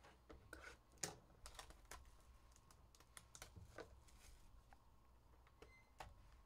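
Faint clicks and light rustles of cardboard trading-card packaging being handled: a box or pack lifted off a stack and turned in the hands. The clicks come thick in the first few seconds, the sharpest about a second in, then thin out.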